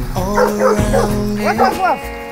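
A dog yipping and barking in play, a quick run of short rising-and-falling yelps, over background music with sustained tones.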